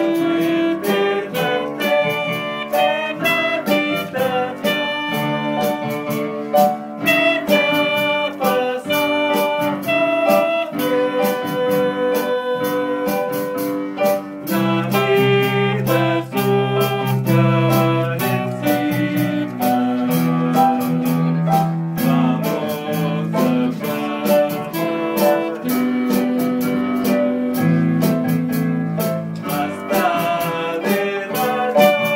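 Band music: pitched instruments playing a changing melody and chords over a steady drum-kit beat with regular cymbal hits.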